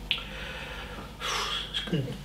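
A man draws a short, audible breath in, about a second and a half in, over faint room tone.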